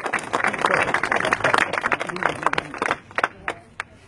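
Crowd applauding with dense clapping that thins to a few last claps about three seconds in and dies away near the end.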